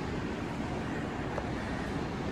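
Steady rushing background noise of a large, nearly empty indoor shopping-mall concourse, with a low rumble underneath.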